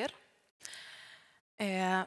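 A woman drawing one breath between sentences: a short, breathy inhale of under a second, with her speech ending just before it and starting again just after.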